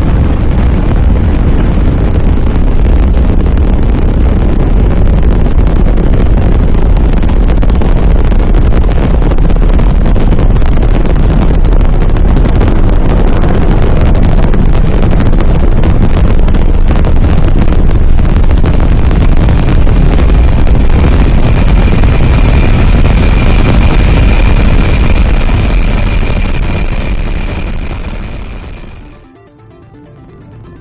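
Space Shuttle launch roar: the loud, dense rumble of the solid rocket boosters and main engines at liftoff, with synthesizer music mixed in. The roar fades over the last few seconds and then cuts off suddenly.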